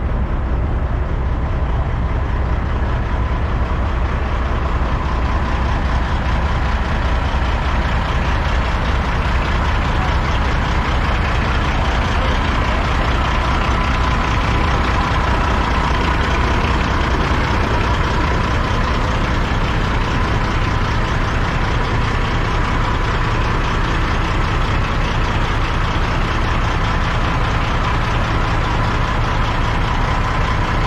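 Semi-truck's heavy diesel engine idling steadily: a constant low drone with a faint steady whine above it.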